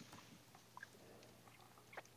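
Near silence: faint room tone with a few small, faint clicks.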